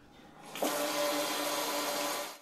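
Water running from a faucet into a sink: a steady rush that comes up about half a second in, with a faint steady hum beneath it.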